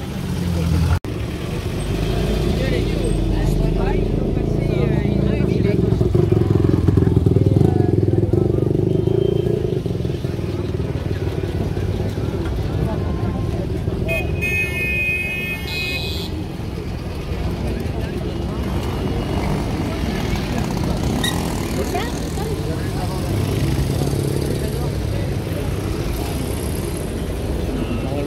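Vintage cars' engines running as they drive slowly past one after another, loudest about six to nine seconds in, with the voices of a roadside crowd. About halfway through, a short high-pitched tone sounds for a couple of seconds.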